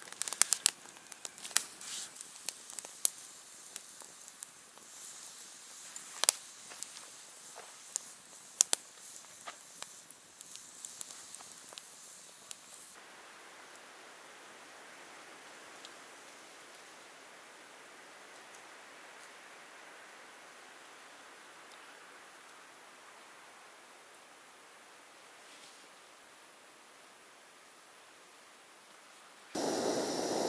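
Wood campfire crackling with irregular sharp pops and snaps for about the first twelve seconds. After that, a faint steady hiss of rain falling. Near the end a backpacking canister stove burner starts up with a loud steady hiss.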